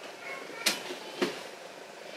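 Books being pushed and shuffled into place on a bookshelf by hand, with two sharp knocks a little over half a second apart as they bump against each other and the shelf.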